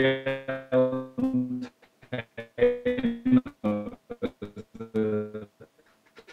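A man's voice over a video-call link, breaking up into garbled, robotic-sounding held tones as the connection drops out. It cuts off about five and a half seconds in.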